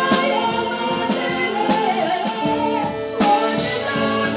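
A man and a woman singing a duet live into microphones, backed by a concert band of brass and woodwinds, with a steady beat of drum hits about twice a second.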